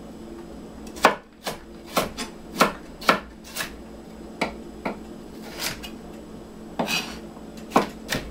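Knife chopping on a wooden cutting board: about a dozen sharp, unevenly spaced knocks starting about a second in, the first the loudest, over a faint steady hum.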